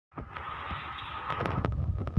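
Outdoor phone-recorded ambience: a steady hiss with wind rumbling on the microphone, growing stronger in the second second, and a few light taps.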